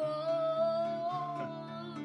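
A child's voice holding one long high 'ooh' note that rises slightly, over chords strummed on a Fender acoustic guitar.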